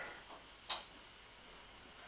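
A single short click about two-thirds of a second in, over faint room tone in a pause between speech.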